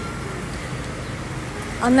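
Steady city street traffic noise, a low even rumble of vehicle engines, with a woman starting to speak near the end.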